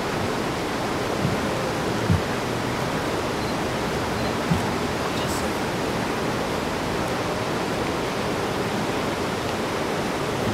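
Steady rush of flowing river water, an even hiss with no pitch, broken by three brief low thumps in the first half.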